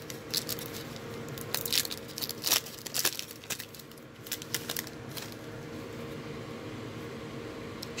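Foil wrapper of a trading-card pack being torn open and crinkled as the cards are pulled out, a run of sharp crackles over the first five seconds. A steady low hum follows.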